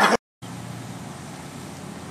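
A burst of laughter cut off suddenly by a moment of dead silence at an edit, then steady outdoor background noise, an even hiss with a low rumble.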